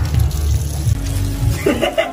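Background music with a heavy bass beat, over water running from a bathroom tap into a washbasin as hands are rinsed under it. A laugh starts near the end.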